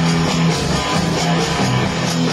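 Rock song in an instrumental passage: electric guitar over bass and drums with a steady beat, without vocals.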